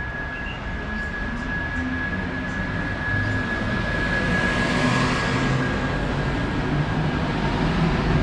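NMBS double-deck push-pull train, the M6 coaches led by their yellow-fronted cab car, running past close by. Wheels rumble on the rails with a steady high tone throughout. The noise swells as the front of the train passes about halfway through and stays loud as the coaches roll by.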